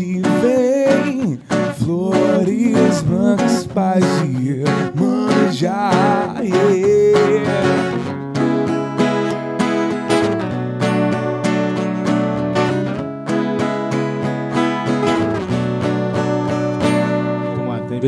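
Two acoustic guitars strumming chords with a man singing a melody over them. The voice drops out about eight seconds in, and the guitars play on alone with steady, ringing chords.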